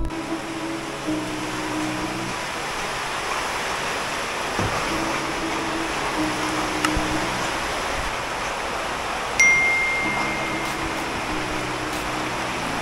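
Heavy rain pouring steadily, with soft background music of slow held notes over it, and one bright ringing note about nine seconds in.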